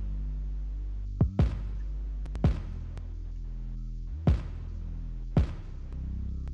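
Synth bass line playing back in a mix session: sustained deep bass notes with sharp drum hits every second or so. The bass is heard dry, without its REDDI tube direct box and Decapitator saturation.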